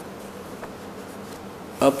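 A steady faint buzzing hum with hiss in a pause between spoken sentences. A voice starts speaking again near the end.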